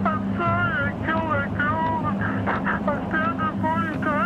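A man speaking over a telephone line in a high, wavering, whining voice, with a steady low hum underneath.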